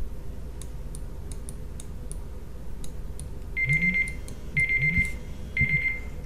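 Countdown timer ticking steadily at about two ticks a second, then an alarm sounding three steady high beeps about a second apart near the end as the 30 seconds run out.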